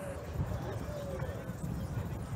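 Faint chatter of pedestrians' voices over a low, uneven rumble from the moving bicycle and wind on the microphone.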